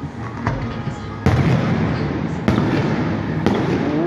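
Aerial fireworks shells bursting: a small pop about half a second in, then three loud bangs roughly a second apart, over a continuous noisy background.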